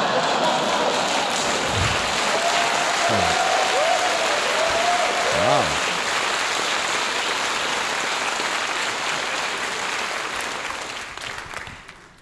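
Live audience applauding after a punchline, with a few voices calling out in the first half. The applause dies away near the end.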